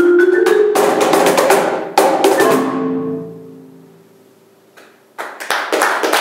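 Marimba with cajón ending a piece: a rising marimba run leads into a few hard accented final chords with drum hits. The last chord, about two seconds in, rings out and dies away. Applause begins near the end.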